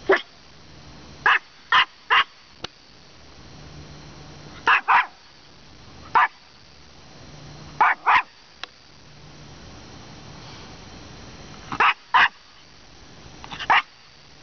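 Small Maltese dog barking at a woolly caterpillar on the ground: about a dozen short, sharp barks in quick pairs and threes, with pauses of a second or more between groups.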